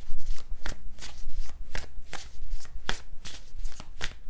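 A deck of tarot cards being shuffled by hand: a quick, uneven run of card snaps and slaps, several a second.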